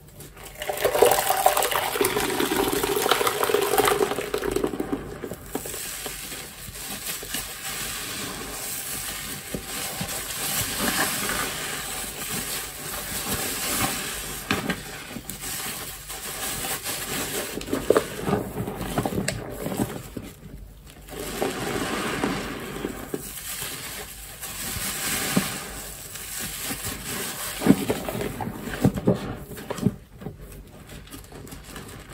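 A soft grout sponge lathered with dish soap being squeezed and kneaded by hand in a basin of soapy water: wet squelching and sloshing with foam, coming in surges with a couple of brief lulls.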